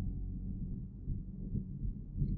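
Low, steady background rumble of room tone, with nothing higher-pitched over it.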